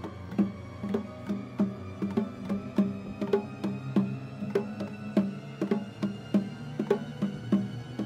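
Hand drums played in a steady beat of about two to three strokes a second, each stroke ringing briefly, over a low held tone.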